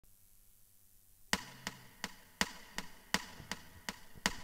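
A count-in of evenly spaced sharp clicks, about three a second, starting a little over a second in, setting the tempo before the music enters.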